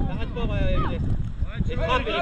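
Wind rumbling on the microphone, a steady low buffeting throughout, under a man's shouted voice in the first second.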